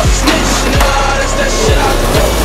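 Hip-hop track with three deep 808 bass kicks that slide down in pitch.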